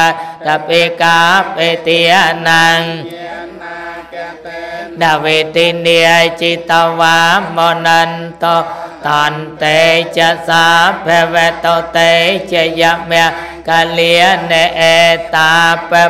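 A Theravada Buddhist monk chants a blessing in one continuous, sing-song recitation into a microphone. The chant softens for a stretch about three to five seconds in, then returns at full strength.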